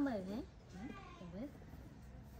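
Baby macaque monkey calling while begging for food: one louder whimpering call with a dipping-then-rising pitch at the start, then two fainter short calls about a second later.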